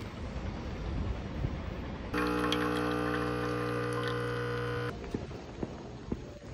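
Faint background noise, then a steady hum with many overtones that starts abruptly about two seconds in and cuts off about three seconds later.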